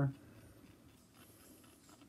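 A man's word ends at the very start, then faint scratchy handling noises with a few soft clicks over quiet room tone while the track is being searched for.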